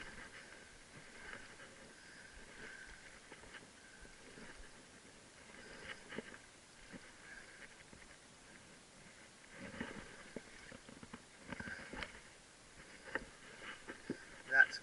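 Faint, soft splashes and handling knocks at the water's surface as a hooked snook is brought in, thickest in the second half, over a quiet steady background.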